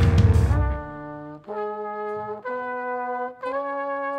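A jazz quintet playing stops under a second in, leaving trumpet and trombone alone holding sustained notes together. The horns move through three held notes, about a second each, stepping upward.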